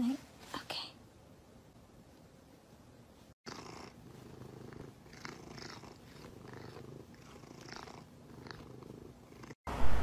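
Domestic cat purring as it is stroked under the chin: a soft, low rattle that swells and fades about once a second with its breathing. A brief louder sound comes at the very start, and the sound drops out for a moment about three seconds in.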